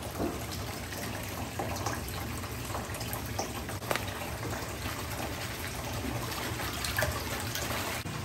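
Water pouring from a floor-mounted tub filler into a freestanding bathtub, a steady splashing as the bath fills.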